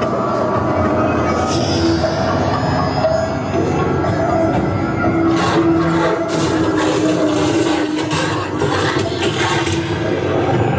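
Haunted-house soundtrack: eerie music with a few held tones over a dense, rumbling noise bed, and a run of sharp bangs in the second half.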